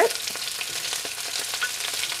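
Hot oil sizzling steadily in a wok, with small pops, as julienned carrots and sliced celery are tipped in on top of frying shredded cabbage for a stir-fry.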